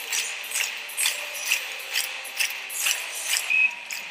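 Hockey arena sound: a steady rhythmic beat of about two sharp strikes a second with a jingling ring, over a haze of crowd noise.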